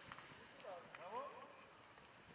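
Faint sound of footballers in a warm-up drill: a short rising call from a voice about a second in, with a few light footfalls.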